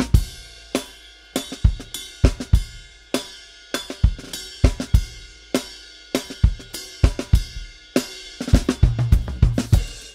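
Funk drum groove played live on a DW drum kit with Zildjian cymbals: kick, snare, hi-hat and cymbal hits in a steady pattern, with a busier run of hits near the end.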